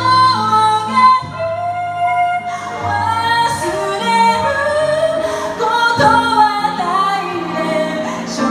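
A woman singing live into a microphone with held, sustained notes, accompanied by chords on a Roland RD-300 digital stage piano, amplified through PA speakers.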